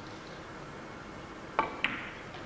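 Two sharp clicks of a carom billiards shot near the end: the cue tip striking the cue ball, then a ball-on-ball click about a quarter second later, over a steady low hiss.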